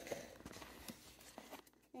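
Faint handling of a closed cardboard box: light rustling with a few soft taps.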